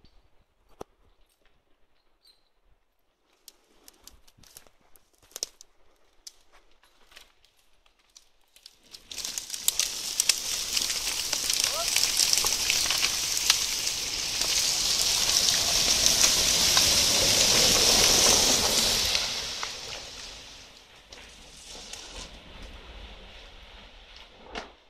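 A spruce log sliding down a forest slope through cut branches and brush: a long, rough dragging noise that starts about nine seconds in, builds for several seconds and fades away near the end. Before it, a few scattered sharp snaps of twigs.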